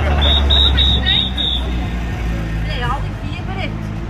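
Several people talking in the background over a low steady hum, which fades after about a second and a half; a run of five short high beeps sounds during the same stretch.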